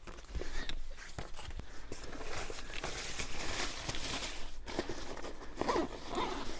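Rustling and crinkling of a rucksack's waterproof rain cover and fabric as the pack is handled and packed, with small irregular clicks and scrapes.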